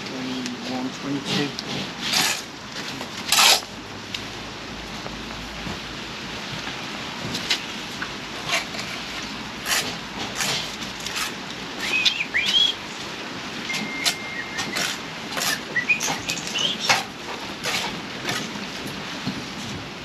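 Bricklaying at a wall: irregular sharp taps, knocks and scrapes of trowels and bricks on the wall as bricks are laid and bedded in mortar. The two loudest scrapes come about two and three and a half seconds in.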